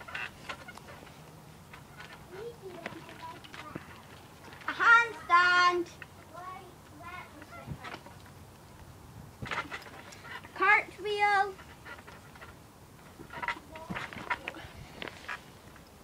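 A girl's high-pitched voice calling out twice, each time two short loud shouts, about five seconds in and again about eleven seconds in, with faint knocks from the trampoline in between.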